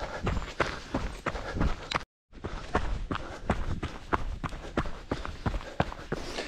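Running footsteps of Hoka Speedgoat 5 trail shoes on a dirt track, an even stride of about three footfalls a second. The sound cuts out briefly about two seconds in.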